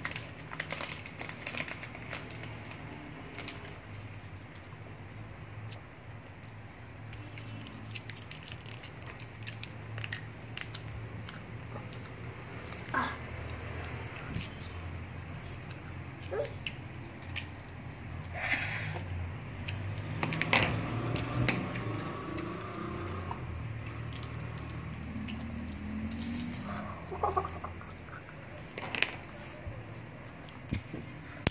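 Plastic candy wrappers crinkling and rustling as gummy candies are unwrapped by hand, in scattered irregular clicks and crackles over a steady low hum.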